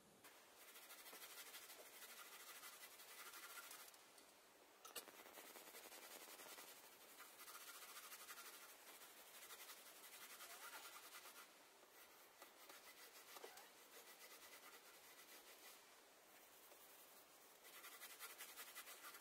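A hand rubbing and scrubbing the top of a stove: faint, scratchy rubbing strokes in runs of a few seconds, broken by short pauses, as the stove is worked over for blacking.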